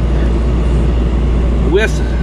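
Dometic rooftop RV air conditioner running: a steady low hum with even fan noise.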